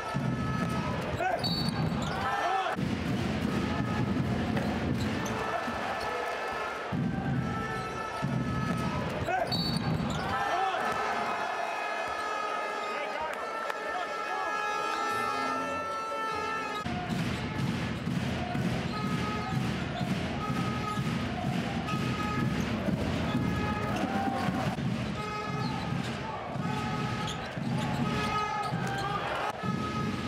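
Live basketball game sound in an arena: a ball dribbling on the hardwood court over continuous crowd voices and arena music.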